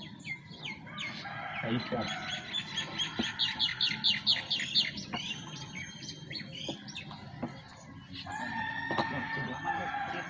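Outdoor birds chirping, with a quick run of repeated high chirps a few seconds in and a longer held call near the end.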